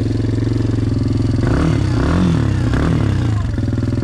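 2023 Can-Am Renegade 110 XXC's fuel-injected 110 cc single-cylinder engine idling, with three quick throttle blips in the middle that rise and fall back to idle. The exhaust note is deep, not whiny.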